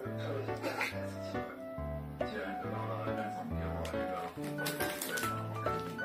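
Instrumental background music: a low bass line changing note about once a second under a simple higher melody.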